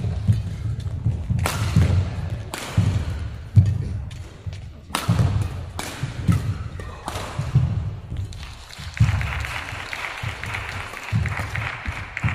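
Badminton singles rally: sharp cracks of rackets striking the shuttlecock, roughly one every second or so, over the repeated low thuds of players' feet landing and lunging on the court mat.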